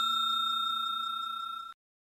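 Ringing tail of a bell-chime sound effect for a subscribe notification: a clear ringing tone with a fast shimmer, fading slowly, then cut off suddenly near the end.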